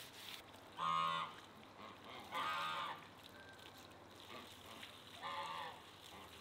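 A farmyard animal calling three times, each call a short drawn-out pitched cry, the second one longest.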